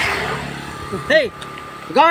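A man's voice in two short calls whose pitch rises and falls, about a second apart. A hiss at the start fades out within the first second.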